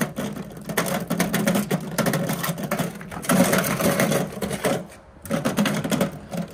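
Wheeled magnetic sweeper pushed over gravel: its wheels and bar crunch and rattle through loose stones in a dense run of fast clicks, easing briefly about five seconds in.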